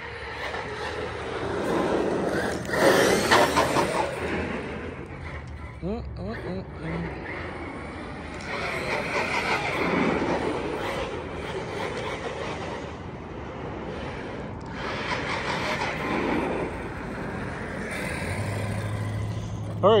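Team Corally Kagama RC monster truck running on a 4S battery: its electric motor whines up and down in pitch as it accelerates and slows, with tyre noise on asphalt, swelling loud three times as it makes passes.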